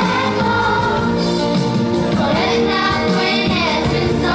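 A choir of children singing a song with instrumental accompaniment, at a steady level.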